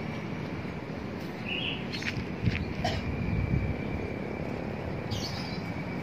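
Outdoor ambience: a steady low rumble with a faint, steady high-pitched tone, and a few short bird chirps scattered through it.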